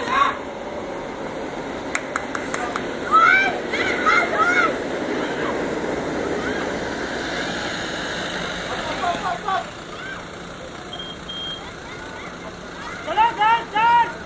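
High-pitched shouts and calls from players and spectators over a steady crowd murmur. The shouts come in three short bursts: about three seconds in, about nine seconds in, and near the end.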